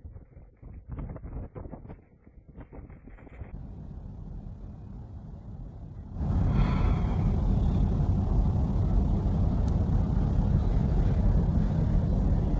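Storm wind on a phone microphone: uneven gusts and crackles at first, then, from about six seconds in, a louder, steady, deep rumble of wind.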